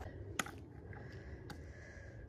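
Faint background noise with a few soft clicks, about half a second and a second and a half in.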